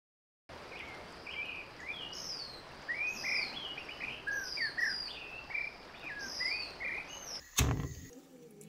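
Several birds singing, with many short varied whistled chirps over a steady outdoor hiss, starting after a brief silence. Near the end comes a short loud thump.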